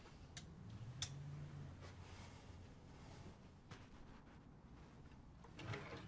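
Faint handling sounds of a wooden closet being searched: a few light clicks and knocks, the sharpest about a second in, and a short rustle of clothes and wood near the end.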